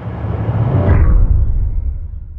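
Title-card sound effect: a deep rumble and whoosh that swells up, is loudest a little after a second in, and then fades.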